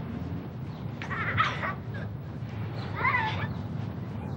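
Two short, high animal calls about two seconds apart, the first a little longer and louder, over a steady low background rumble.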